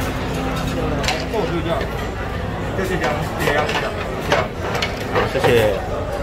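Background chatter of several voices in a busy restaurant dining room, over a steady low hum, with a few sharp clinks.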